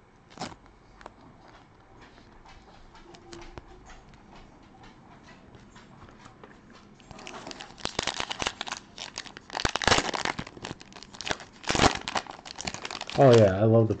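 Foil wrapper of a Prizm basketball card pack being torn open and crinkled by hand, loud and crackly from about halfway in, after a few faint handling clicks.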